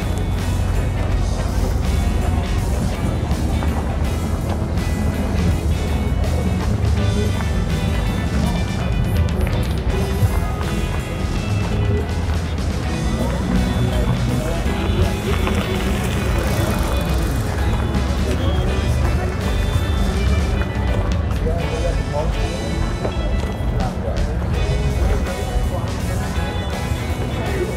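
Background music playing steadily, with voices mixed in.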